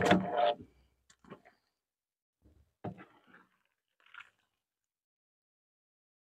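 A round wire-mesh sieve knocked against the rim of a metal wax-melting tank to shake out the slumgum strained from melted beeswax cappings. There is one loud knock at the start, then a few faint knocks and scrapes.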